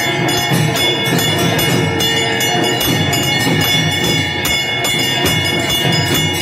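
Temple puja music during the aarti: bells and cymbals clanging continuously in fast, steady strikes over a pulsing drumbeat.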